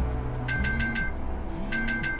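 An alarm beeping in groups of four quick high beeps, each group repeating about every second, over low sustained background music.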